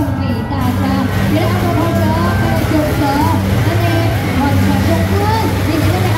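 Beiguan procession music: a suona (shawm) plays a wavering, sliding melody over a steady low hum, with crowd voices mixed in.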